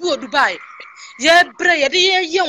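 A person's voice in short bursts that rise steeply and waver in pitch, with a brief steady tone in the middle.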